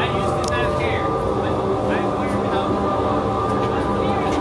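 Steady drone of the large pumps and motors of an aquarium life support filtration system, a dense even hum of many tones, with faint voices over it.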